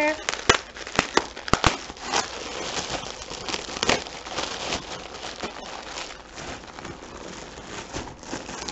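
Clear plastic packaging crinkling and rustling as it is handled and pulled open, with a few sharp crackles in the first two seconds.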